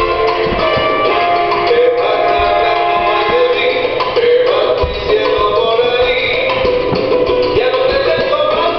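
Salsa music playing.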